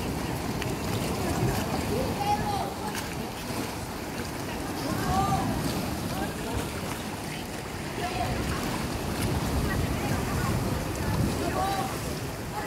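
Sea waves breaking and washing over rocks, a steady rumbling surf, with wind buffeting the microphone. Faint, distant voices call out a few times over it.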